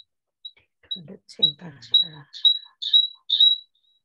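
An electronic beeper sounding short high beeps at one pitch, about two a second. The beeps grow much louder partway through, then stop just before the end.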